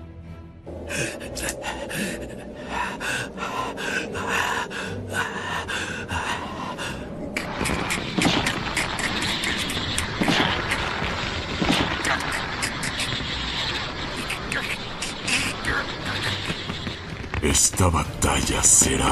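Anime battle soundtrack: music under a character's wordless straining yells and gasps, with crackling effects early on giving way, about seven seconds in, to a dense rushing noise of energy-attack sound effects.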